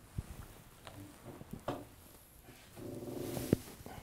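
Faint handling noise of equipment being moved about on a work surface: a few light clicks and knocks, and a low rough rasp for about half a second near the end as the gear is shifted.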